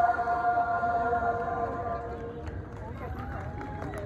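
A choir holding its final chord, which dies away about two seconds in, followed by scattered voices talking.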